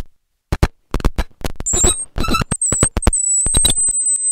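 Experimental noise music: after a brief silence, rapid, irregular, choppy stutters of cut-up sound. About halfway through, a thin high whistling tone joins them, wavering at first and then holding steady.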